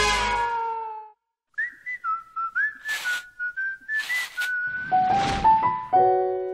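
Cartoon music fades out about a second in. After a brief pause, a short whistled tune plays, with three short swishing noises in it, and a held chord begins right at the end.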